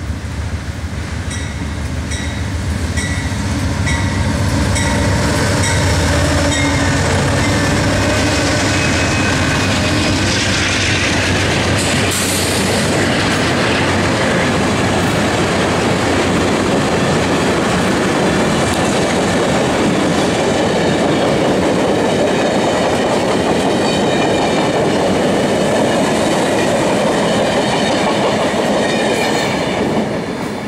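Amtrak passenger train led by three GE P42DC diesel locomotives passing at speed: the locomotives' diesel engines drone louder as they approach and pass, then the passenger cars roll by with steady wheel clatter on the rails.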